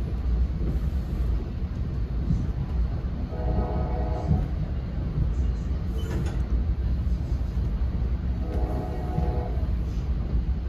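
Steady low rumble of an NJ Transit commuter coach riding at speed, heard from inside, with a train horn sounding twice, each blast a little over a second long and about five seconds apart.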